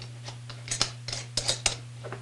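Metal screw-on lid of a Turbo Roaster being twisted tight onto a small glass jar: a string of short scraping clicks from the threads, most of them in the second half.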